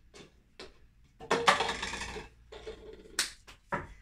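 Clear plastic cups and straws handled on a wooden table: light scattered clicks and taps, a louder stretch of noise for about a second in the middle, and two sharp clicks near the end.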